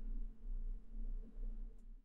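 Quiet room tone with a steady low electrical hum.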